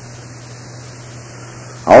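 Steady hiss with a low mains hum, the background noise of an old recording, with nothing else over it. A man's narration starts right at the end.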